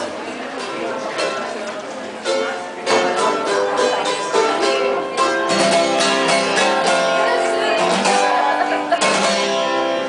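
Acoustic guitar and mandolin strummed together, playing chords that grow louder and fuller about three seconds in.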